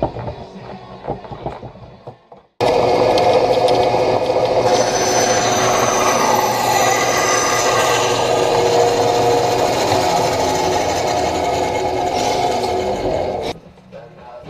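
Bandsaw running and cutting a wooden board: a loud, steady motor-and-blade noise with a held whine. It starts suddenly a couple of seconds in, grows harsher as the blade bites into the wood, and cuts off suddenly near the end.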